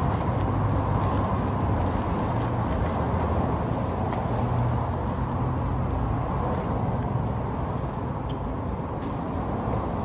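Steady low rumble of vehicle noise, even in level throughout, with a few faint clicks and rustles of food being handled and eaten close to the microphone.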